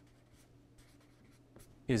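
Marker pen writing a short word, a run of faint strokes, followed near the end by the start of a man's speech.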